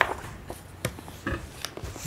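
Quiet room with a few brief, soft taps and rustles of objects being handled, spread over two seconds.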